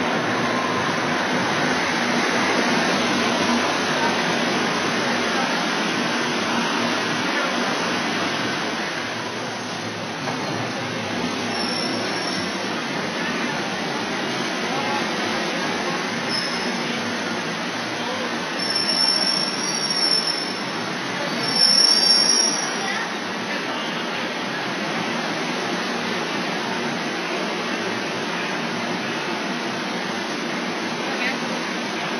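A Madrid Metro Line 1 train pulls into the underground platform with a steady rumble and hiss. As it brakes to a stop, several short high-pitched metallic squeals come one after another in the second half, the loudest near the stop.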